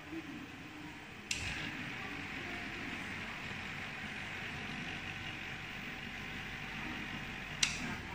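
Benchtop vortex mixer running with a glass test tube pressed into its rubber cup, mixing the tube's contents. It starts with a click about a second in, runs steadily for about six seconds, and stops with a sharp click near the end.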